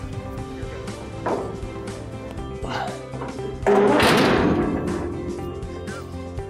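A metal gooseneck-trailer ramp dropping with a loud crash about two-thirds of the way in, the noise fading over about two seconds, over steady background music.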